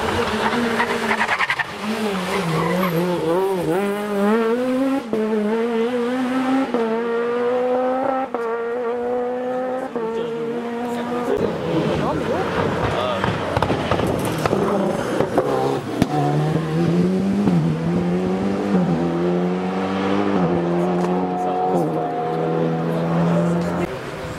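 Two rally cars pass one after the other, each accelerating hard up through the gears. The engine note climbs, drops at each upshift and climbs again: the first car from about two to eleven seconds in, the second from about sixteen seconds on.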